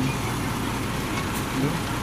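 Truck engine idling, a steady low rumble heard from inside the cab.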